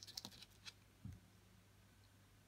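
Near silence with a few faint small clicks in the first second as hands handle a crochet hook and yarn, and one soft low thump about a second in.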